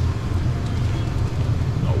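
A steady low rumble of background noise, with a man's voice briefly at the very end.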